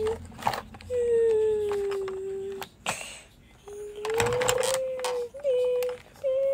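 A child humming a long engine-like drone for a toy garbage truck, the pitch sliding slowly down, breaking off briefly in the middle, then rising and holding steady. A few plastic clicks sound as the toy is handled.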